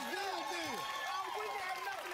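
Several voices talking over one another from a TV talk-show soundtrack, none of the words clear.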